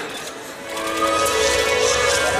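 A film clip's soundtrack starting through a hall's sound system: held music notes fade in about a second in, over a low rumble.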